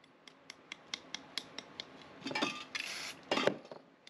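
Spray-paint work: a run of quick, even ticks about five a second, a brief hiss from a spray-paint can around the middle, and a short knock near the end.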